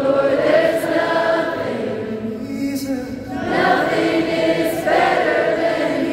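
Live worship song in an arena: many voices singing long held notes together, with a short lull before the next phrase swells back in.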